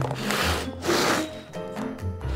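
Plastic cake-decorating turntable being turned by hand: two short rubbing, grating sweeps in quick succession, over background music.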